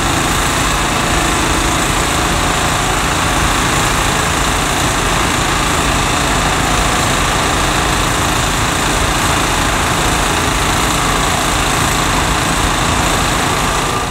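Vibratory pile-driving rig running steadily while setting steel sheet piles: a constant, unchanging engine and machine noise.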